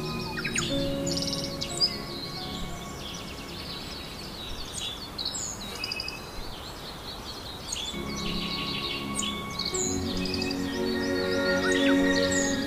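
Many small birds chirping over soft, slow background music. The music drops away about a second in, leaving the birdsong on its own, and returns near the end.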